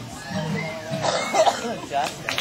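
People's voices and a cough, about a second in, as an acoustic guitar song ends and the guitar dies away.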